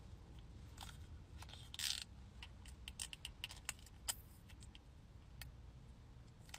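Faint scattered clicks and taps of a small glass makeup bottle and fingernails being handled as liquid foundation is poured into a palm and dabbed with the fingertips, with a brief rustling hiss about two seconds in, over a low steady rumble.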